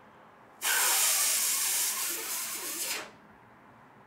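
Breath blown onto a smartphone held to the lips: one steady, breathy hiss lasting about two and a half seconds, starting just after the beginning and stopping sharply.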